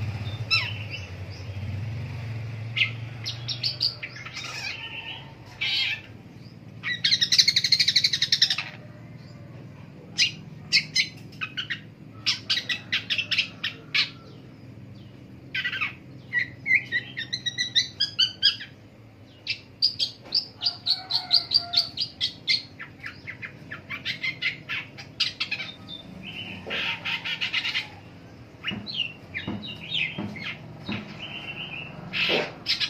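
A caged long-tailed shrike (pentet) singing a varied, chattering song. It strings together rapid runs of short notes and whistled glides, with two loud harsh, scratchy bursts, one early and one near the end.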